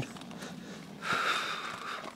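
The cricket (roller) in a spade bit's mouthpiece rolling as the horse works it with his tongue while backing up, a soft whirring that lasts about a second from halfway through, over faint hoof steps in sand.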